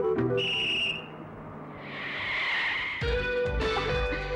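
A single short, shrill whistle blast, then a swelling and fading hiss as a bus brakes and pulls up. Background film music drops out for this and comes back with a beat near the end.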